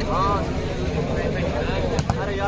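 Voices of players and spectators calling out during a volleyball rally, loudest just at the start, over a steady low rumble.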